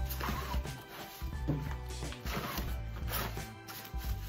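Nylon backpack pocket being handled and its zipper pulled in short rasps, over background music with a steady low bass line.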